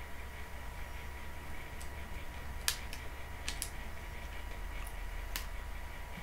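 Quiet room tone with a steady low hum and a faint steady whine, broken by a few short sharp clicks in the second half.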